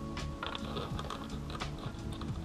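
A scatter of light, irregular clicks and taps from hands working at a motorcycle's plastic fairing and its fittings, over steady background music.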